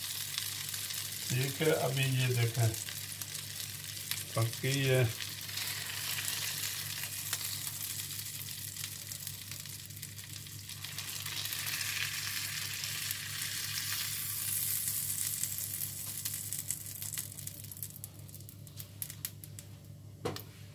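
Breaded fish fillets sizzling in shallow oil in a ridged grill pan, a steady crackling hiss that swells in the middle and dies down toward the end as the fillets are lifted out. A few faint clicks near the end.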